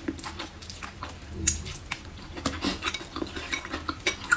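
Wooden chopsticks tapping and scraping against a ceramic bowl while picking up rice and braised pork, heard as a run of small, irregular clicks.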